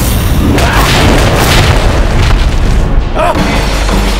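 Battle sound effects of weapons clashing: booming hits and sweeping whooshes over dramatic background music.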